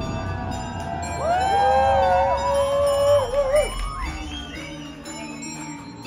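A rock band playing live, with high bell-like tones over a steady groove. From about a second in, loud wordless voices hold a rising-and-falling line for a couple of seconds, then the music drops back to a steady low drone.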